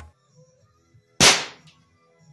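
Walther Reign PCP bullpup air rifle firing a single shot: one sharp, loud crack about a second in that dies away within half a second. The rifle's air reservoir is near the bottom of its sweet spot, close to 100 bar, where shot velocity is starting to drop.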